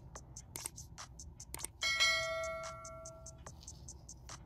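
A bell-like notification chime rings about two seconds in and fades over a second and a half: the sound effect of an animated subscribe button's bell. Around it, a run of small sharp clicks comes from fingers working sticky hair wax through a section of curly hair.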